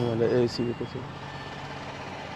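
A few short voice sounds in the first second, then a steady low background noise of an outdoor gathering.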